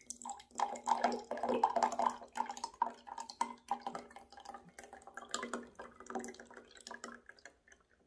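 A bottled basil seed drink poured from a plastic bottle into a glass tumbler, splashing and gurgling as the stream fills the glass. It is loudest in the first couple of seconds and grows thinner and softer toward the end.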